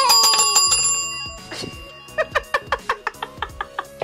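A desk call bell is struck, its bright ring fading out over about a second and a half. It is rung to signal that a player has finished the block design first and won the round.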